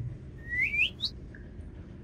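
A bird-tweet sound effect: three quick rising chirps, one after another, under a second in.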